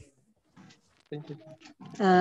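A brief low thump on the microphone, then about a second in a short, faint stretch of a person's voice over a video-call connection.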